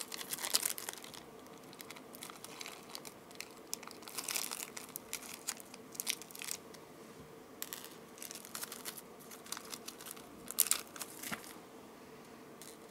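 Quiet crinkling and rustling in short spells, with small clicks, from small packaging being handled while crimp beads are fetched.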